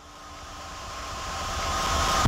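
Electronic dance-music build-up: a white-noise sweep swelling steadily louder, with faint sustained tones underneath.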